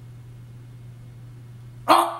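A man's sudden loud, wordless shout near the end, short and sharp, over a steady low electrical hum.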